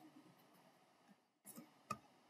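Near silence with faint hiss, broken by a short burst and then a sharp click near the end: a computer mouse clicking to start a toolpath calculation.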